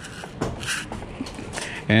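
Gloved hands handling a plastic circuit breaker in a breaker panel: rubbing and scuffing with a few light clicks.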